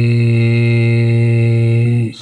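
A Buddhist monk chanting a Pali verse, holding one long, steady note at the close of the line; the note stops right at the end.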